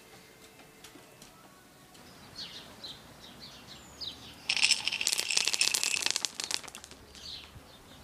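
Small birds chirping in short falling calls, broken in the middle by a loud burst of rapid rattling that lasts about two seconds.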